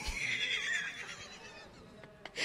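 Horse whinny sound effect played from a laptop soundboard: one wavering high call that fades away over about a second and a half.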